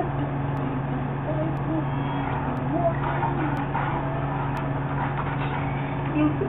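A man's voice singing faintly in short snatches over a steady low hum, with faint ticks about once a second.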